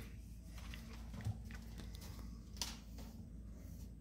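Handling noise from a phone camera being moved away from a binocular eyepiece: a couple of light clicks or knocks, one about a second in and a sharper one past halfway, over a low steady rumble.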